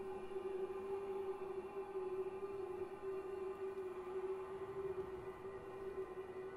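Vocal ensemble holding one long sustained note, a steady drone that does not change pitch.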